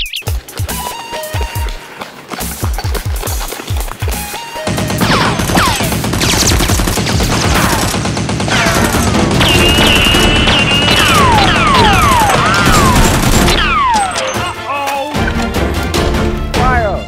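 Background music with a steady beat, then from about five seconds in a long, rapid run of gunfire sound effects with falling whistles over the music.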